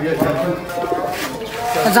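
Domestic pigeons cooing.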